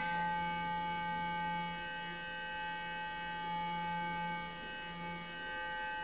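Clarisonic sonic facial brush with a foundation brush head running against the skin of the face while blending foundation: a steady electric hum.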